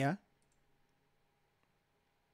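The end of a man's spoken word, then near silence broken by a few faint computer mouse clicks.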